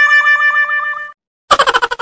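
Intro sound effects: a held, whistle-like pitched tone with a quick wobble cuts off about a second in. After a brief gap comes a springy cartoon 'boing' that pulses rapidly, about eight times a second, and dies away.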